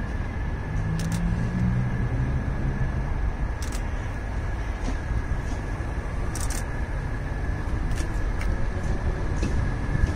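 Diesel multiple-unit train running slowly into the platform: a steady low engine rumble, strongest in the first few seconds, with a thin steady high tone and a few scattered clicks.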